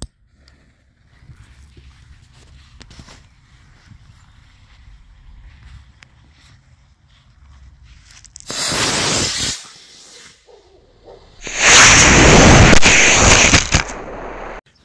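A lit fuse sputters faintly for several seconds, then a D12 black-powder model rocket motor fires with a loud rushing hiss lasting about a second. A few seconds later there is a second, louder burst of rocket-motor hiss lasting over two seconds.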